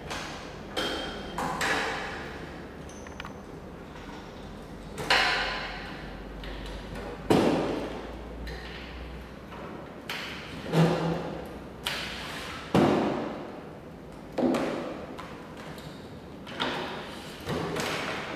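Irregular metal knocks and clanks, about a dozen, some ringing briefly: a dry-cut metal saw's motor head being lowered and held down with its transport chain, and the saw being shifted on the table.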